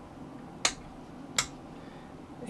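Two sharp clicks, about three-quarters of a second apart, as small added toggle switches on a modded Vox AC4 valve guitar amp's front panel are flipped down.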